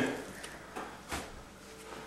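A lump of wet type S mortar dropped onto metal lath with a single soft plop about a second in. Otherwise quiet.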